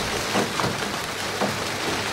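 Steady rain pouring, a recorded storm sound effect, with the last of a low thunder rumble fading out at the start.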